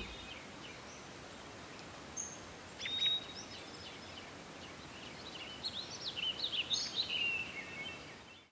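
Quiet background of birds chirping over a steady hiss. There are a few short chirps around two to three seconds in and a busier run of chirps over the last few seconds.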